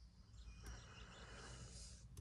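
Near silence: faint room tone inside a car cabin, with one faint click about two-thirds of a second in.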